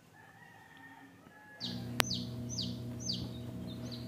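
Newly hatched chicks peeping inside a homemade egg incubator: a run of about five high, falling peeps roughly half a second apart, starting about a second and a half in. They come over a steady hum from the incubator that starts at the same moment. A single sharp click sounds at about two seconds.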